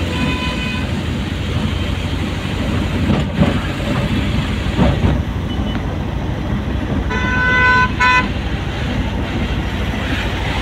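Steady engine and road rumble heard from inside a moving car, with a vehicle horn: a faint toot at the start, then a long toot about seven seconds in and a quick second toot right after.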